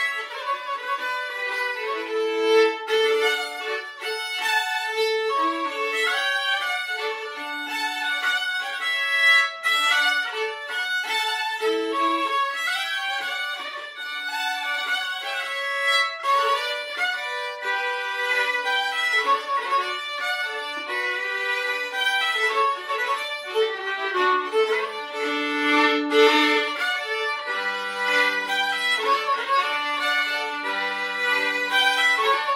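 Two fiddles playing a Swedish folk småpolska together, a short polska with a marked beat, the notes moving quickly and often two pitches sounding at once.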